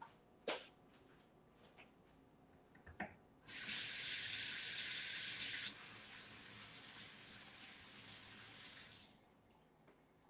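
Kitchen sink faucet running while hands are washed under it. The water comes on after a few faint knocks, runs louder for about two seconds, then quieter for about three more, and is shut off near the end.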